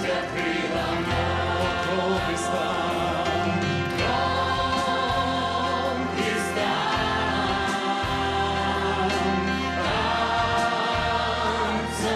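Church worship team singing a gospel song: a male lead singer on a handheld microphone with women's backing vocals and a choir, over amplified instrumental accompaniment with sustained bass notes and a steady beat.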